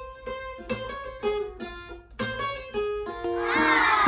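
Acoustic guitar picking a melody of single notes, about two a second, each ringing briefly. Near the end a higher gliding tone rises and then slides down over the notes, and the sound grows louder.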